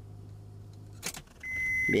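The 3.5 engine of a 2002 Acura MDX idling with a low steady hum that drops away with a click about a second in, followed by a steady high-pitched electronic warning beep. The engine nearly cuts out because the faulty ignition switch (pastilla) loses contact when its wiring is touched.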